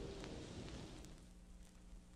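The last held chord of a 1938 shellac 78 rpm record fading out early on, leaving the disc's faint surface hiss with a few scattered clicks.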